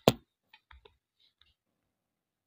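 A sharp click right at the start, followed by a few faint, short clicks and taps over the next second and a half.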